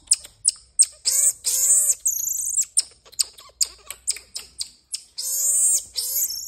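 Pet marmoset calling: a rapid run of short, sharp chirps, broken by high wavering trills, a falling whistle about two seconds in and another trill near the end.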